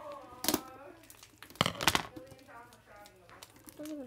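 Crinkling of a foil Pokémon card booster pack being handled and pulled at, with sharp crackles about half a second in and again near two seconds in. Faint voices are heard between them.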